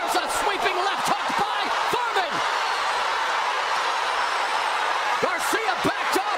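Arena boxing crowd noise, a steady din with individual voices shouting over it in the first couple of seconds and again near the end, and a few sharp smacks of punches landing.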